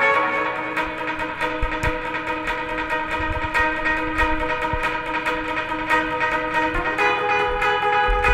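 Post-punk rock band music: rapidly picked, bell-like chiming guitar notes ring over sustained chords, with low bass and drum thumps joining after a couple of seconds and a chord change near the end.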